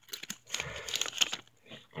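Pokémon booster pack's foil wrapper crinkling as it is handled, a run of irregular crackles that is densest around the middle.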